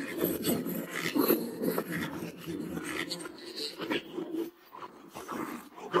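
Close-up eating sounds of a man biting and chewing a roast chicken drumstick coated in chili sauce: irregular chewing and mouth noises, with a brief lull about four and a half seconds in.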